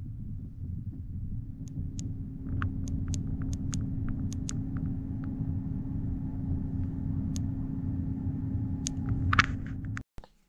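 A steady low rumble with one constant hum, and a scattered run of light, sharp clicks from about two seconds in.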